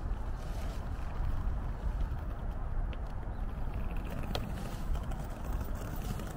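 Steady low rumbling outdoor noise with a few faint ticks, one of them near the end.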